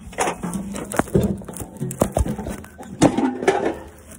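Metal cover of an old, worn-out electrical disconnect box being forced open: irregular metal scraping with sharp knocks about one, two and three seconds in.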